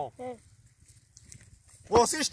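A man's speech: one short syllable just after the start, a pause of about a second and a half with only faint background, then talking resumes near the end.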